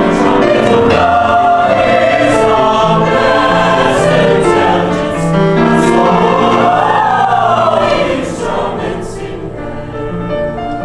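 Mixed choir of men's and women's voices singing with grand piano accompaniment, in sustained held chords; the singing eases off about eight seconds in.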